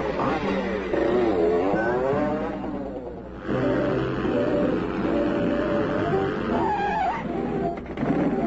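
Cartoon soundtrack music with an animal-like cry sound effect that wavers up and down in pitch during the first few seconds.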